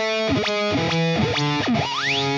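Distorted electric guitar played through the Axiom software amp and effects chain: a short phrase of single notes, about one every 0.4 seconds, each sliding down into its pitch, with a fast upward sweep near the end.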